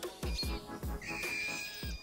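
Birdsong over background music with a steady beat, with a clear whistled note held for about a second in the second half.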